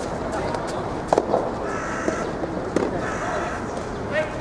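Soft tennis rally: sharp pops of the soft rubber ball off the rackets, two loud ones about a second and a half apart, with two short harsh calls between and after them.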